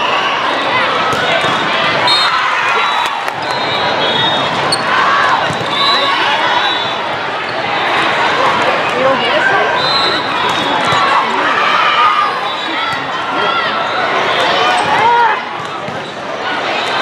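Volleyball rally in a large hall: players and spectators shouting and calling out over one another, with sharp slaps of the ball being played and short, high squeaks of shoes on the court.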